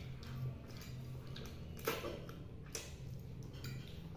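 Metal forks scraping and clinking against plates during eating, with a sharper click about two seconds in and another shortly after, over a low steady hum.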